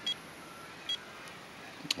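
Two short, high key beeps from a Garmin eTrex handheld GPS as its buttons are pressed to step through the menus, about a second apart, followed by a sharp click near the end.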